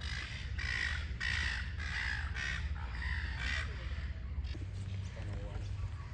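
A crow cawing: a quick run of about seven harsh caws, roughly two a second, that stops a little after halfway. A steady low rumble runs underneath.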